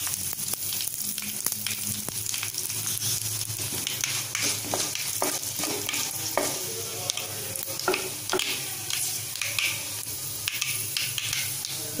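Mustard seeds and dried red chillies sizzling in hot sesame oil in a metal kadai, with a spoon stirring and scraping the pan and many sharp crackles from the spluttering seeds.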